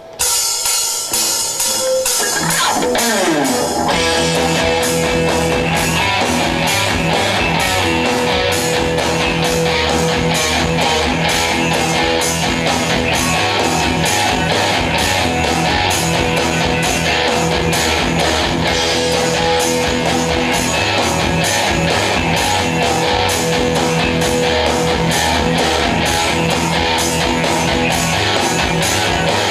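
Electric guitar played live over a pre-recorded backing track of drums, bass, guitars and keyboards. After a sparser opening, the full backing with a steady drum beat comes in about four seconds in.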